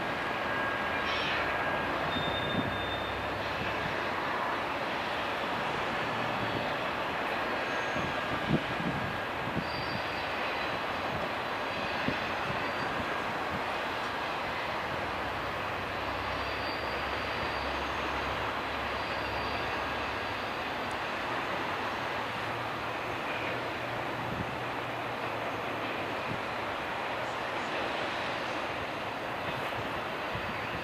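Double-stack intermodal freight train rolling past: the container cars' wheels on the rails make a steady rumble, with a few sharp clanks and faint, thin high squeals.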